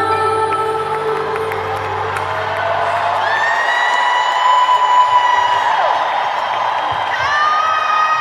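Live pop concert heard from within an arena crowd: the band's music with deep bass, which drops out a few seconds in, while the crowd cheers and whoops and long, high held cries ring out over it.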